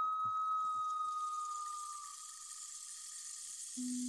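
Electronic sound design of an animated logo intro: one steady high tone that fades away over about two seconds under a swelling airy hiss, with a low hum-like tone coming in near the end.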